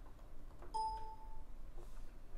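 A single faint short chime, a steady tone lasting under a second, starting a little under a second in, over quiet room tone.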